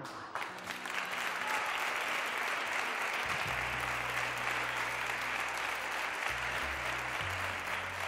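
Studio audience applauding steadily, with a faint low steady hum coming in underneath about three and a half seconds in.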